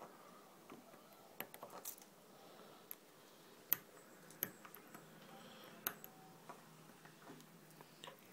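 Small 3D-printed plastic support material and raft being broken and picked off a printed part by hand: scattered faint clicks and snaps, the sharpest about halfway through.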